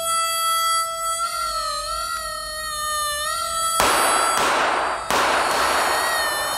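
Sound effect edited into the talk: a steady whistle-like tone, wavering slightly, held for about four seconds, then three loud noisy blasts in quick succession.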